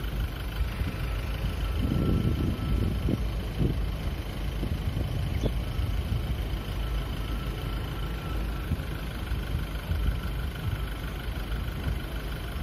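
A motor vehicle engine idling: a steady low rumble.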